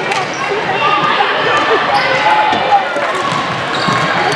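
Busy indoor volleyball hall: overlapping, indistinct chatter of players and spectators, with volleyballs bouncing and slapping on the hard court floor in short sharp knocks throughout.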